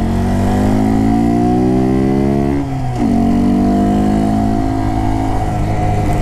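Honda Grom's small single-cylinder four-stroke engine accelerating, its pitch rising until an upshift a little under three seconds in, then rising again and levelling off at a steady cruise, over wind rush.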